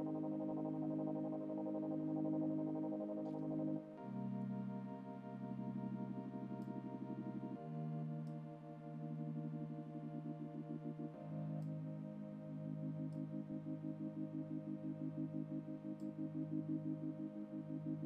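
AIR Loom modular additive software synth playing a sustained chord progression, the chord changing about every four seconds. A low-pass filter is faded in and out by an envelope so the sound breathes, and a fast, regular pulse runs through it.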